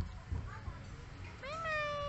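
Baby macaque giving one long, high coo about a second and a half in, rising at first and then held steady. A few soft low bumps come near the start.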